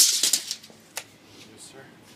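Tape measure blade retracting with a quick rattle, then snapping home with a single click about a second in.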